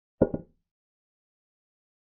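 Chess board software's move sound effect for a pawn capture: a short double click of wood-like knocks, the second right after the first.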